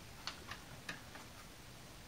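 Faint clicks and taps of hard plastic as an action figure is pressed into the cockpit of a G.I. Joe Cobra Condor toy jet, about four in the first second and a bit, then quiet handling.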